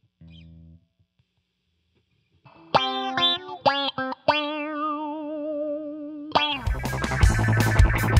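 Electric guitar played through a filter effects pedal: a brief quiet low note, then after a pause a few plucked notes and a held note with a wavering pitch. From about six and a half seconds a louder, dense, distorted passage takes over.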